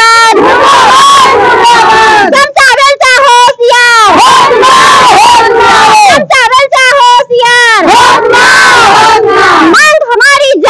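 A group of women chanting protest slogans together, very loud and close. Short rapid syllables alternate with long drawn-out shouted phrases in a repeating rhythm.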